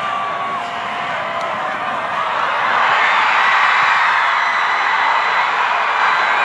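Football crowd in the stands cheering and shouting, swelling louder about two and a half seconds in as the play develops.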